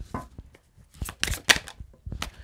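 Tarot cards being handled and dealt from the deck onto the table, with a few short sharp card snaps and taps, most of them clustered a little after a second in.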